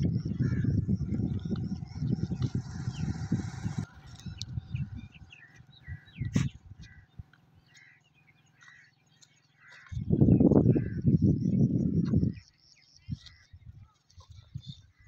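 Small birds chirping repeatedly in the background. Bursts of loud low rumbling noise cover the first four seconds and come again for about two seconds near ten seconds in, with one sharp click midway.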